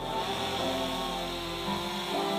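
An engine running steadily, without revving, under background music with sustained chords.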